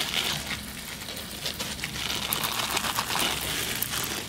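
Water droplets dripping and ticking onto leaves and substrate in a freshly misted snake enclosure: a steady crackle of many small irregular clicks.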